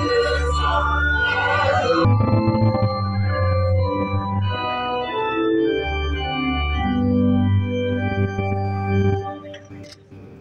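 Organ playing slow, sustained chords over deep bass notes, fuller in the first two seconds and fading away near the end.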